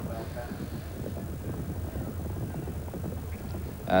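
Steady low background rumble from the outdoor sound of a televised horse race, with no distinct events in it.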